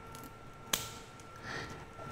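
Small dissecting scissors snipping once through a chicken's leg joint during a necropsy, heard as a single sharp click about a third of the way in. A faint steady hum runs underneath.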